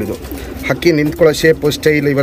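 Domestic pigeons cooing, mixed with a man's voice; the sound is quieter for the first moment, then the low, bending calls resume.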